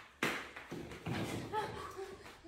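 A single sharp knock about a quarter second in, dying away quickly, followed by a few brief faint vocal sounds.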